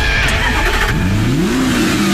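A car engine revving up, its pitch climbing steeply about a second in and then holding high.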